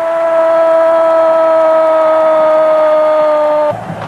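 A man's voice holding one long, steady shouted note, a drawn-out goal cry, which sags slightly in pitch and stops shortly before the end.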